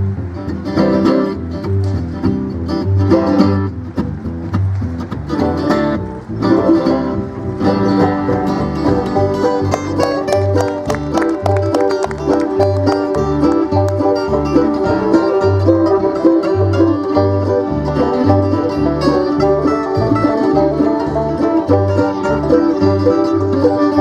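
Bluegrass band playing an instrumental on fiddle, banjo, mandolin, acoustic guitar and upright bass, with the bass walking steadily underneath. The music grows fuller about eight seconds in, as fast banjo picking comes to the front.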